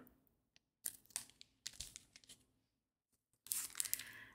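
Faint crinkling of clear plastic product packaging being handled, in a few short, scattered rustles, with a louder stretch of rustling near the end.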